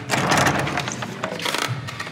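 A door's metal lever handle being turned and the door pushed open, with latch clicks and knocks over rustling handling noise.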